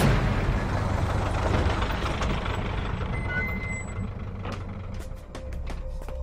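Film soundtrack with music fading out under a low vehicle engine rumble, and a few sharp clicks in the last second or so.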